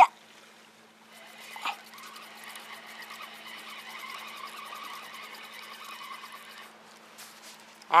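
A spinning reel being cranked to bring in a hooked fish: a faint steady whirring with fine rapid ticking, starting about two seconds in and stopping shortly before the end.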